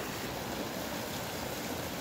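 Shallow trout stream running over rocks: a steady rush of water.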